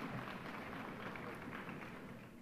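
Scattered audience applause in a large hall, tapering off toward the end.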